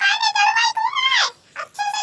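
A very high-pitched, chipmunk-like singing voice: one sung phrase ending in a falling slide, a short pause, then the next phrase beginning near the end.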